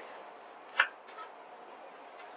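A kitchen knife slicing down through watermelon rind: one short crisp cutting sound a little before a second in, followed by a couple of faint scrapes.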